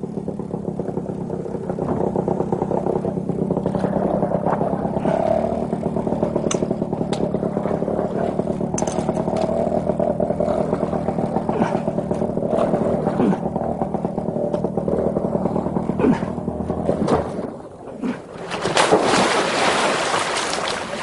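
Small two-stroke outboard motor running steadily at speed, pushing a canoe that is hung up on a log. Near the end the engine note drops away and a loud splash follows, a man falling into the river.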